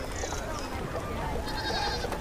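Quiet background ambience with a faint, wavering livestock call in the second half.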